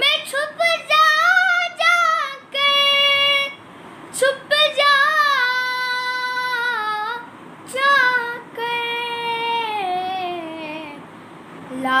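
A boy singing an Urdu manqabat unaccompanied, drawing out long held notes with ornamented runs between short breaths. Near the end the melody glides slowly downward.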